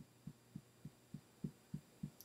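Fingertips tapping on the collarbone point in EFT tapping: soft, dull taps at an even pace of about three and a half a second.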